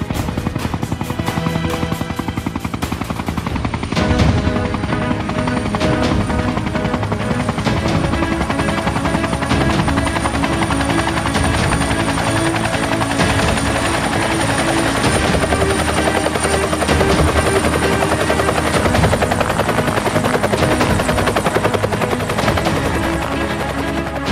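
Helicopter rotor chopping in a fast, even rhythm. From about four seconds in it grows louder, with film score music mixed over it.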